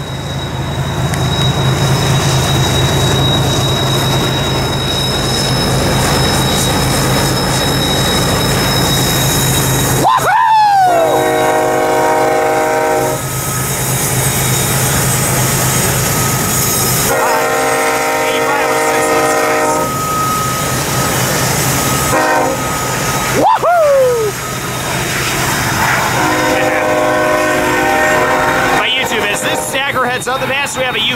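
BNSF double-stack freight train passing close by. Its diesel locomotives run with a low steady drone for about the first ten seconds. After that a multi-chime locomotive air horn sounds four times, long, long, short, long, in the grade-crossing pattern.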